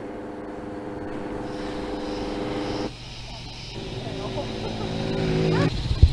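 A vehicle engine running steadily with an even hum. It breaks off briefly about three seconds in, then resumes and grows louder toward the end.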